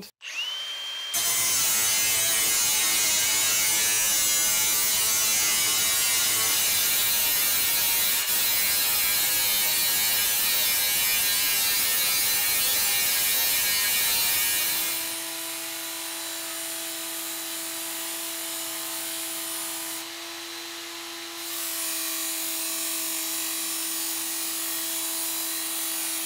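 A cordless angle grinder spins up with a rising whine and then grinds the edge of a metal ceiling-fan blade to sharpen it, a loud steady grinding that lasts about fourteen seconds. It gives way to a small belt sander running with a steady hum as the blade edge is ground on its belt, dipping briefly about twenty seconds in.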